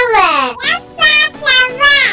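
High-pitched child's voice singing a few short notes, the first sliding down in pitch.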